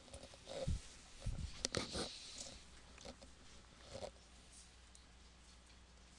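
Faint handling sounds of a pen on a paper worksheet on a desk: two dull thumps about a second in, a few sharp clicks and taps around two seconds, and another small tap near four seconds, over a quiet room hum.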